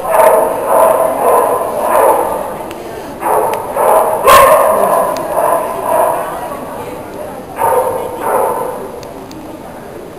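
Dogs barking in repeated bouts, loudest in the first half, with a sharp bark about four seconds in and another bout near eight seconds, over voices.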